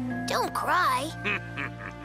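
Wordless vocal sounds from a cartoon character, a short pitch-swooping cry near the start, over held background music.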